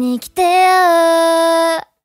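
A female singer holds one long sung note with nothing behind it, wavering slightly in pitch. The voice breaks off abruptly near the end.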